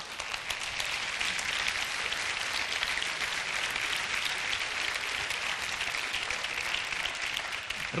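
Studio audience applauding steadily after a punchline, the clapping cut off abruptly near the end.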